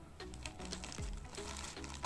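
Scissors snipping through a plastic courier mailer bag: a quick series of short snips.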